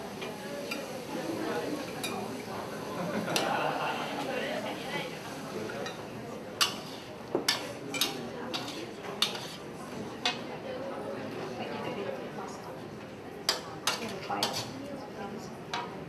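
A metal wok spatula stirring and scraping food in a metal wok over a steady cooking noise, with sharp clinks of the spatula striking the pan in a run from about six seconds in and again near the end.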